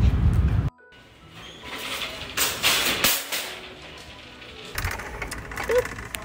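Wind rumbling on the phone's microphone outdoors, cut off abruptly under a second in. After that comes quieter shop ambience with background music.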